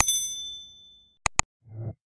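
Sound effects of an end-screen subscribe animation: a quick double mouse click and a bright notification-bell ding that rings out and fades over about a second. About a second later comes another sharp double click, then a short, soft low pop near the end.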